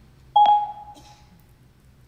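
Siri's electronic chime on an iPhone: one short tone about a third of a second in that rings out and fades over about a second, as Siri takes the spoken command.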